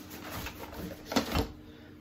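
Plastic disc golf discs being handled: one disc slipped into a backpack bag among other discs, with a faint rustle of plastic and two sharp knocks a little after the middle.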